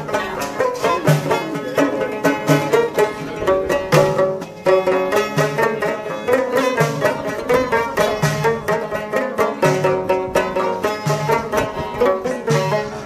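Moroccan Amazigh folk music: a loutar, a long-necked skin-topped lute, plucked in quick running notes over a steady low frame-drum beat.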